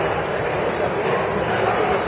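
Several people's voices calling out and shouting over a busy hubbub, with high yelping calls, and no instruments playing.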